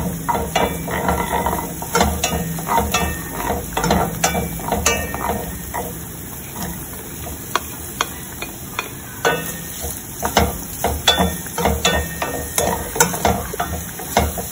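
Wooden spoon stirring and scraping in a stainless steel frying pan, with garlic sizzling in hot oil. Sliced onions go into the pan about halfway through, and the stirring goes on with irregular scrapes and knocks.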